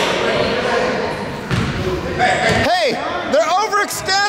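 Basketball game sounds in an echoing gym: crowd chatter and a ball being dribbled on the hardwood court. From about halfway through come high squeals that bend up and down in pitch.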